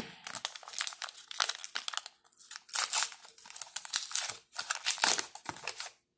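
A SportKings trading-card pack wrapper being torn open and crumpled in the hands: irregular crinkling and crackling, with louder bursts about halfway through and again near the end.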